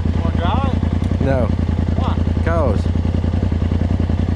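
Engine of a Polaris RZR Turbo tube-chassis side-by-side idling steadily with an even, fast low pulse, under short bits of talk.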